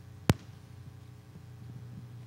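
A single sharp click or knock about a third of a second in, the loudest thing here, over a steady low hum.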